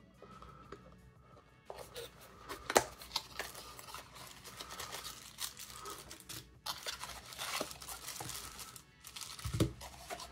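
Cardboard packaging being opened and a small plastic bag handled: irregular rustling, scraping and plastic crinkling, with a sharp snap about three seconds in. Faint background music runs underneath.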